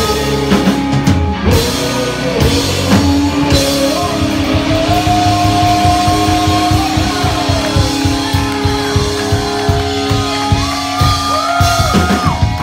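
Live punk rock band playing loudly: electric guitars, bass and a fast drum beat, with a singer holding long notes over them and a note rising near the end.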